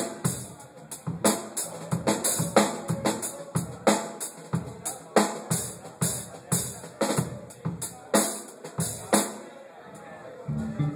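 A drum kit played on its own: deep drum hits with sharp snare and cymbal strokes in a loose, steady pattern of two or three strokes a second, which stops about a second before the end.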